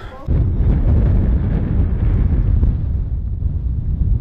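Wind buffeting the camera's microphone: a loud, low, noisy rumble with no clear tones that starts suddenly just after a laugh and then holds steady.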